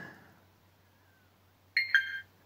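Flysky Noble radio transmitter beeping near the end: two quick electronic tones, the second a little lower. It sounds as its touchscreen toggle switches Smart Vehicle Control on.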